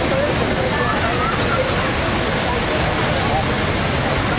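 Barcelona's Magic Fountain of Montjuïc running, its many jets giving a steady rush of falling and splashing water, with no music playing. A crowd talks faintly over it.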